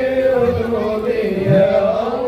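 Voices chanting sholawat, devotional praise of the Prophet, in long held melodic lines that slide in pitch.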